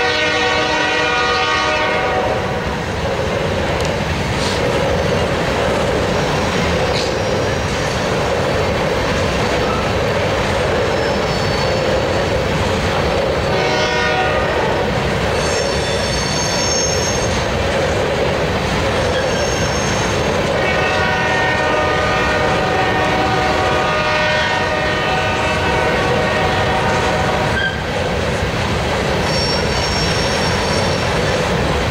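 Union Pacific freight train rolling past, a long string of open-top gondola cars giving a steady roar of wheels on rail. The locomotive's air horn sounds in the first two seconds, again briefly near the middle and for several seconds in the later part, more distant as the engines move away, with high wheel squeal at times.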